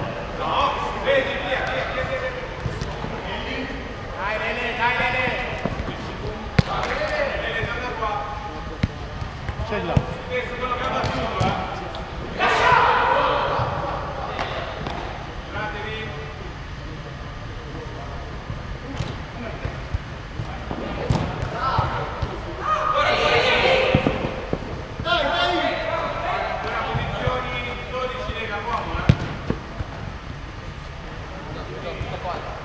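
A five-a-side football game in a large echoing hall: players shout and call to each other, and the ball is kicked and bounces on the turf in repeated short thuds. The loudest shouts come about halfway through and again a little later.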